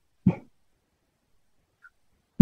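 A single short, sharp vocal sound about a quarter of a second in, with a faint brief blip near the end.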